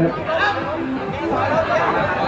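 Chatter of several people talking at once, with a man's short word at the start.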